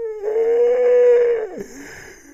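A long vocal sound held at one high, near-steady pitch for about a second and a half, then dropping away sharply.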